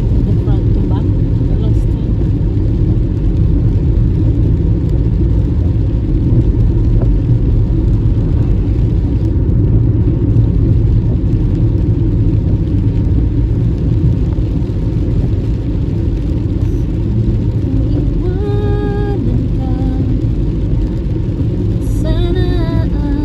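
Steady low rumble of a car driving on a wet road, heard from inside the cabin: engine and tyre noise. Near the end there is a short pitched tone.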